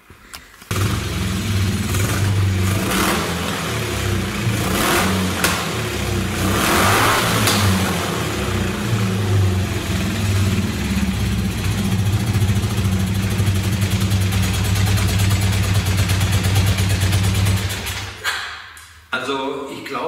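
Air-cooled BMW boxer-twin engine catching about a second in and running steadily, with one brief rev about seven seconds in, then shut off near the end.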